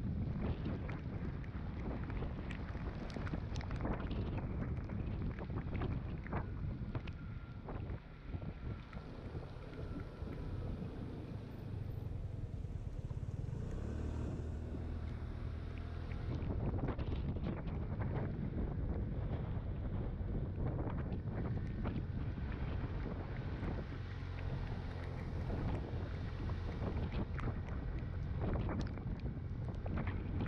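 Wind buffeting the microphone and wet-road rumble from a scooter riding in the rain, with scattered taps and clicks throughout.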